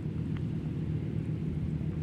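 A steady low hum of a distant engine running in the background.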